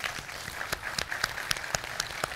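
Audience and seated panel applauding: a dense patter of many hands clapping, with a few nearer, sharper claps standing out at about four a second.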